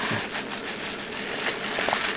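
Granular aquarium soil pouring from a plastic bag into a small glass tank: a steady, even rush of grains landing on the glass bottom and on each other.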